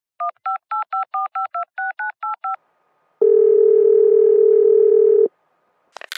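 Telephone keypad touch tones (DTMF) dialing an eleven-digit number in quick beeps, followed by a single steady ringback tone lasting about two seconds as the call starts to ring.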